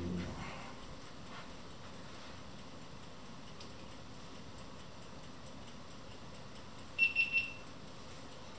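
Quiet room, then near the end a quick run of three or four short, high electronic beeps at one steady pitch.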